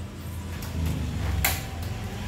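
A low steady rumble with a single sharp knock about one and a half seconds in.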